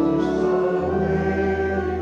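Church pipe organ playing sustained chords, with voices singing along in a hymn; the bass note changes a little under a second in.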